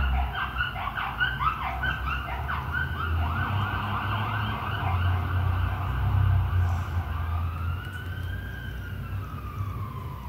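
A siren sounding, first in a fast warbling yelp, then from about seven seconds in a slower wail that rises and falls. A steady low hum runs beneath it.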